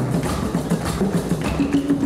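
Live marimba and percussion band music: marimbas playing a repeating pattern of short low notes over drums and percussion.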